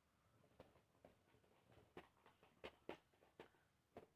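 Near silence, broken by a few faint, sharp clicks of metal Beyblade spinning tops knocking together on a paper stadium, more of them in the second half.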